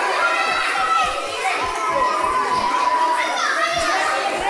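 A crowd of children chattering and calling out at once, many voices overlapping.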